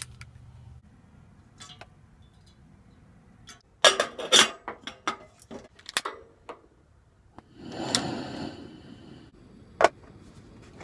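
Clinks, knocks and clicks of handling a plastic water bottle, a stainless kettle on a camp stove's metal grate and a stove lighter, thickest from about four to six and a half seconds in. About eight seconds in, a short rush of noise rises and fades as the gas burner is lit, and a single sharp click comes just before the end.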